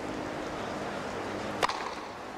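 A single sharp crack of a tennis racket striking the ball on a hard first serve, about one and a half seconds in, over a steady low stadium murmur. The serve is a 127 mph ace out wide.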